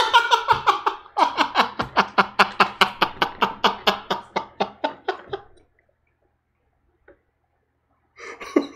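A man laughing hard in a rapid, even run of short bursts, about five a second, dying away after about five seconds.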